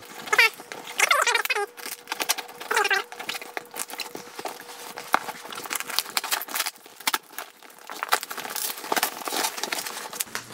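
Heavy duct tape and packing tape being torn and peeled off a cardboard box by hand. The tape gives three short squeals in the first three seconds, among continuous crackling and ripping of tape and paper wrapping.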